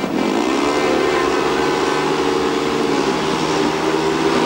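Several speedway motorcycles, 500cc single-cylinder engines, revving hard together on the start line as the riders wait for the tapes to rise. The revs climb just after the start and are then held steady at a high pitch.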